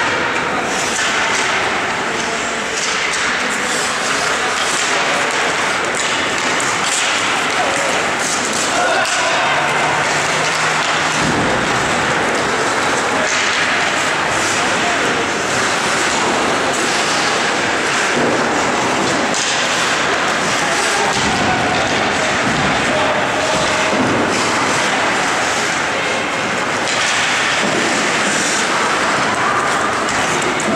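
Ice hockey game sound: indistinct voices of players and spectators shouting and talking, with skates scraping the ice and scattered knocks and thuds of pucks, sticks and bodies against the boards.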